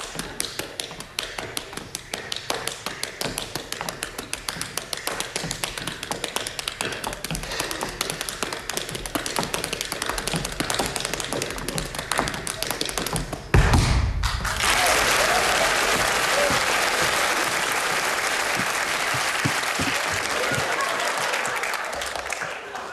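Tap dancing: a rapid, dense run of tap-shoe strikes on a wooden stage, ending in a heavy thud about thirteen seconds in. Audience applause follows and holds steady.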